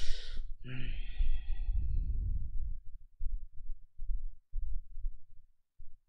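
A man sighs heavily close to the microphone, with a short breathy hum after it. Then comes a run of low, irregular thuds through the rest.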